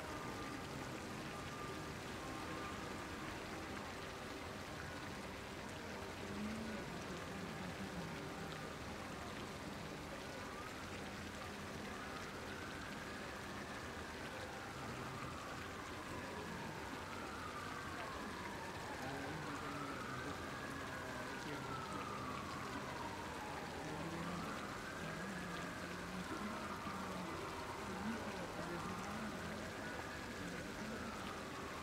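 Fountain jets splashing steadily into a garden pond. From about ten seconds in, a tone rises and falls over and over, one swell every two to three seconds.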